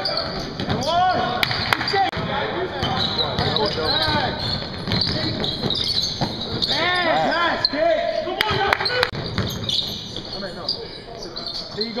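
Basketball game on a hardwood gym floor: sneakers squeaking in short chirps and a basketball bouncing, with sharp knocks about one and a half seconds in and again about eight and a half seconds in. Players' voices are mixed in.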